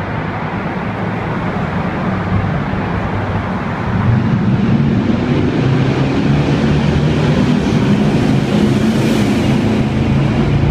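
Road traffic echoing inside a concrete road tunnel: a steady rumble of car engines and tyres that grows louder about four seconds in as a vehicle passes close by.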